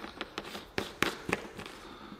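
Plastic clicks and scrapes of a P100 filter cartridge being twisted onto the threaded port of a Honeywell full-face respirator mask: several irregular sharp clicks, the loudest about a second in.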